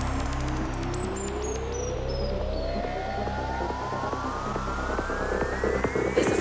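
Psytrance track in a build-up: a synth sweep rises steadily in pitch through the whole stretch over a low bass drone, while a fast series of ticks falls in pitch during the first half.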